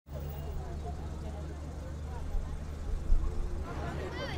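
Roadside street ambience: a steady low rumble of road traffic with voices chattering in the background, and a louder low bump just after three seconds in.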